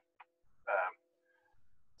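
A man's short, croaky hesitation sound, just under a second in, over a faint steady hum that stops about three-quarters of the way through.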